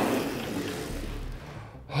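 Electric drift kart's motor and tyres on a concrete floor, fading steadily as the kart slows to a stop, with a man's exclamation starting right at the end.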